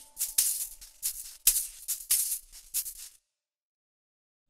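A lone shaker playing quick strokes in a loose rhythm at the tail of a film-score cue, with nothing else under it. It stops about three seconds in, and silence follows.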